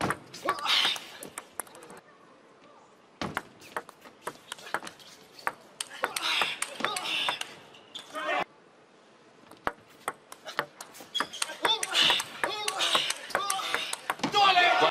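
Table tennis rallies: the ball clicks sharply off paddles and the table in quick runs of strikes. Short bursts of voices break in between points.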